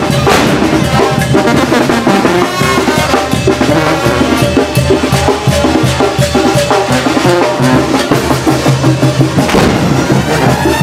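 Mexican banda (wind band) playing live, with drums keeping a steady beat under brass.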